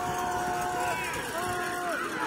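A voice singing long held notes: one note ends about a second in, and a second, shorter note follows, over a steady background noise.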